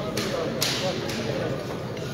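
Murmur of a crowd of men talking, with a few brief swishing noises in the first second.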